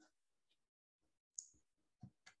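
Near silence, with one faint short click about one and a half seconds in.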